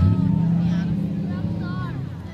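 Loud, low drone of a large road vehicle close by. It starts suddenly and fades away over about two seconds, with voices faintly underneath.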